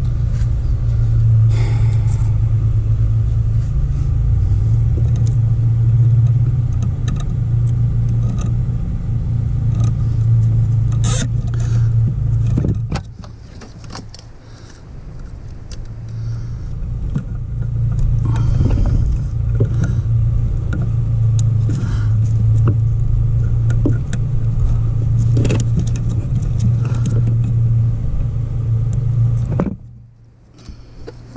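A steady, loud, low motor hum or rumble. It dips out about 13 seconds in, builds back, then cuts off suddenly just before the end. Scattered light clicks sit over it.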